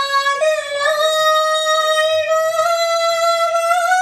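A woman singing solo, holding one long high note; the pitch steps up slightly about half a second in and stays steady, rising a little near the end.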